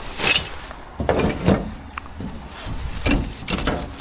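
Plastic rubbish bags rustling and crinkling as they are handled and shifted, in a few short bursts.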